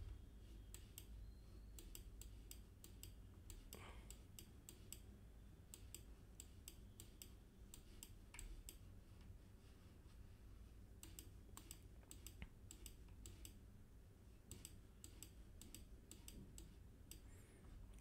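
Faint, irregular clicks of a computer mouse, some quick clusters of several clicks, over a faint low hum of room tone.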